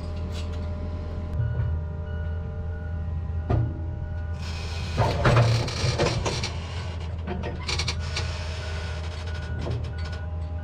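John Deere 8360R tractor idling steadily, with metal clanks of the nurse-tank hitch and a rushing hiss of about two seconds midway.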